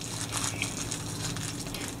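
Crinkling of a small plastic bag being handled: a dense, continuous run of light rustles, over a steady low hum.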